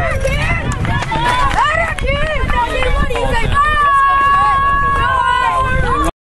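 Spectators shouting and cheering, several voices overlapping in rising and falling yells, as a runner advances on a base hit. Near the middle one voice takes up a long, held yell that carries on to the end.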